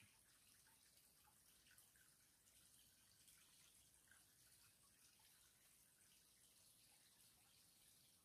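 Near silence: faint trickle of water flowing along the bottom of a stone overflow tunnel.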